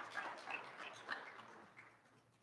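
Audience applause dying away, thinning to a few scattered claps and fading out by the end.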